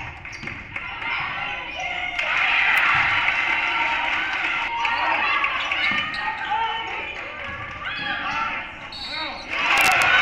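A basketball dribbling on a hardwood gym floor, with players and spectators calling out in a gymnasium during play.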